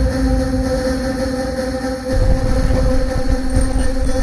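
Wind rumbling on the microphone outdoors, over a steady low mechanical hum. The rumble dips briefly about halfway through and then picks up again.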